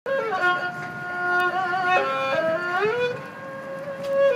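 Erhu, a Chinese two-stringed bowed fiddle, played solo: a slow melody of held notes with vibrato, sliding smoothly up and down between pitches, dropping softer on a long note near the end.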